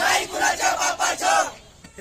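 A group of protesters shouting a slogan together in loud, pitched bursts, stopping about a second and a half in.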